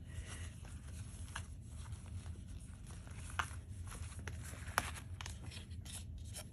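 Faint handling sounds of a jewellery gift box and its satin pouch: soft rustling and a few light, scattered clicks over a low steady hum.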